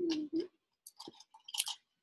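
A brief falling 'mm' hum, then a few faint mouth clicks and smacks close to the microphone.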